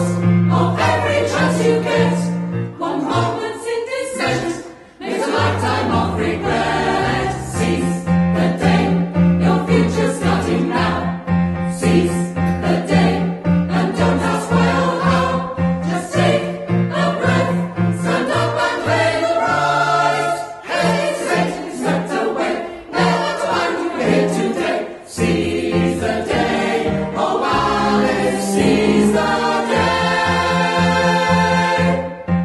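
Mixed choir of men's and women's voices singing together in full voice, over low held accompaniment notes; the sound dips briefly about five seconds in, then carries on.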